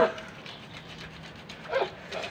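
Hands rubbing and squeezing a soapy wet garment in a basin of wash water, a soft, uneven scrubbing. A short vocal sound falling in pitch comes near the end.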